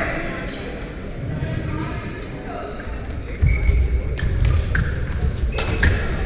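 Badminton rally on an indoor court: sharp racket hits on the shuttlecock, the loudest shortly before the end, with brief shoe squeaks and footfalls thudding on the court floor from about halfway, in a large echoing hall.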